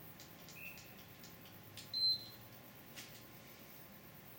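Small electronic device beeping once, short and high, about two seconds in, with a fainter, lower tone about half a second in and a few faint clicks around them: a heart-rate monitor watch being read and operated between sets.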